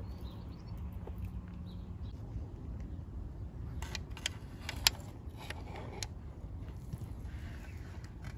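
A low steady rumble with a few sharp metallic clicks about four to five seconds in, the loudest near five seconds: a socket on a long extension bar knocking against metal as it is fitted onto a 10mm sump bolt through the flywheel cutout.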